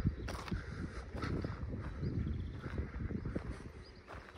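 Footsteps crunching on loose gravel and rubble, an uneven step about every half to one second.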